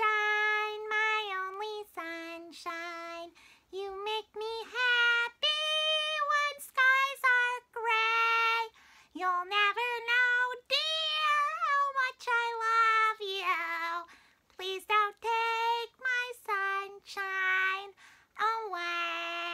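A very high-pitched puppet voice chattering and half-singing in short phrases, with no clear words.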